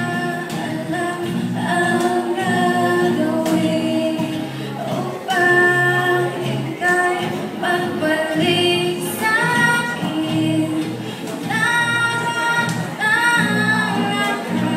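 Two girls singing a song into microphones, accompanied by an ensemble of acoustic guitars, with held notes that glide between pitches.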